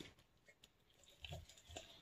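Faint sounds of a Doberman mouthing and chewing a raw pork hock, with two soft chewing sounds in the second half.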